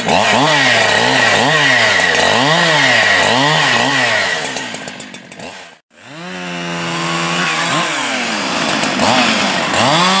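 Husqvarna 572xp 70cc two-stroke chainsaw cutting through a log. For the first few seconds the engine pitch dips and recovers about one and a half times a second under load. After a short break near the middle, it runs at a steady high pitch in the cut.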